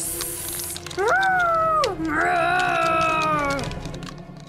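A girl's voice making mock animal noises for a play fight between toys: a short hiss, then two long high cries, the first rising, holding and dropping, the second longer, wavering and sliding down at the end. Soft background music runs underneath.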